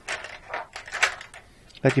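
Paintbrushes and painting gear being handled at the work table: a quick, irregular run of small clicks, knocks and scrapes.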